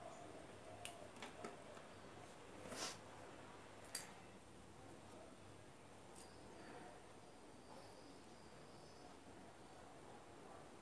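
Near silence: room tone with a few faint clicks in the first four seconds and a soft rustle just before three seconds in.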